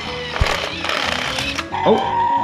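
Battery-powered Lego Duplo toy train running along plastic track with a rattling whirr, which dies away just before the end as the train stops. A short low thump comes about half a second in, with background music underneath.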